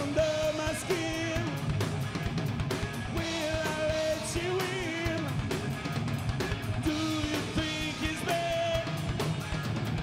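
Live rock band playing: a male singer holding long notes with vibrato over distorted electric guitar, bass guitar and a drum kit beating steadily.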